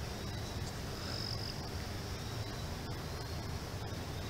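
Quiet outdoor background: a low, steady rumble with a thin, high insect buzz over it, a little stronger about a second in.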